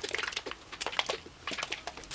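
Plastic hair-dye applicator bottle being shaken and handled: scattered light clicks and rustles, thicker at first and thinning out.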